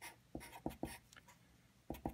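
Felt-tip marker writing on paper: a few short scratchy strokes in quick succession, then one more near the end.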